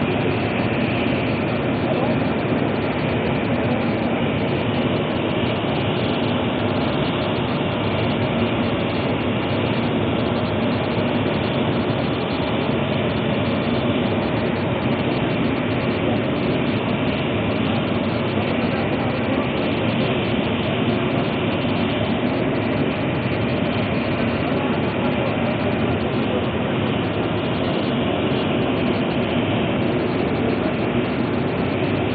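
A loud, steady machine-like rumble that runs on without a break, like large machinery running.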